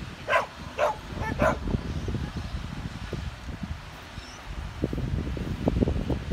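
A dog barking three times in quick succession, about half a second apart, then quieter for the rest of the moment.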